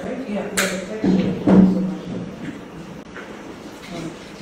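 Indistinct talk of people a little way off, with a sharp click or clatter about half a second in.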